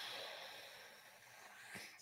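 A person's breathy exhale through the nose into the microphone, starting suddenly and fading over about a second, then a breath drawn in just before speaking.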